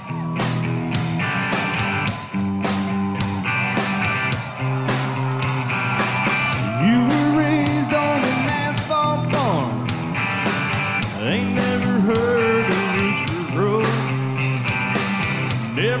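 Country-rock band playing an instrumental passage: drums keeping a steady beat under strummed guitars, with an electric guitar lead bending and sliding between notes.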